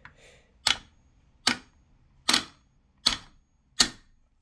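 A steel claw hammer tapping five times, about once every 0.8 s, on the front sight and Picatinny rail of a Citadel Boss 25 shotgun, knocking the stuck handguard loose. Each tap is a short, sharp metal-on-metal knock.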